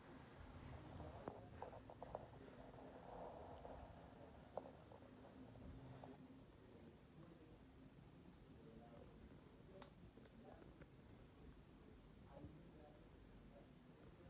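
Near silence: room tone, with a faint muffled TV murmuring in the background and a few faint clicks.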